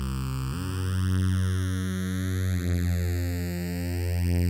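Roland System-100 software synthesizer playing its 'LD Phase Lead' patch: held single lead notes with a slowly sweeping phaser, moving to a new note about half a second in and again around two and a half seconds.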